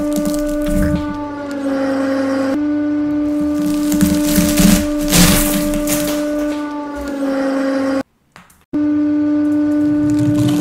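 A steady held tone dips slightly in pitch twice, under crunching and cracking of dry instant ramen blocks being crushed, loudest about halfway through. The sound cuts out briefly near the end.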